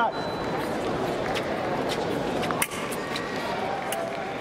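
Foil fencers' footwork and blades on a metal piste: a few sharp clicks and taps, the strongest about two and a half seconds in, over steady voices and noise of a large hall.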